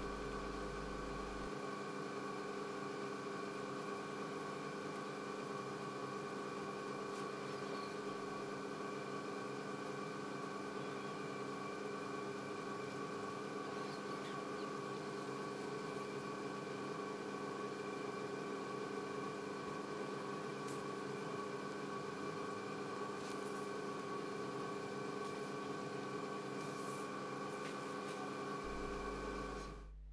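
Steady hum of a JEOL JSM-T200 scanning electron microscope's running vacuum pumps, a stack of steady tones that holds the same pitch throughout. A few faint light clicks in the second half.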